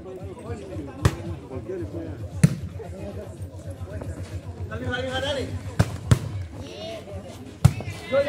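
Hands slapping a ball during a rally: five sharp smacks at uneven intervals, the loudest about two and a half seconds in, with a murmur of spectators' voices behind.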